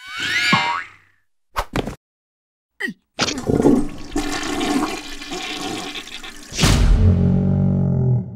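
Cartoon sound effects: a quick rising whistle-like glide, two short clicks, then a long gushing noise from about three seconds in, with a louder, lower burst near the end.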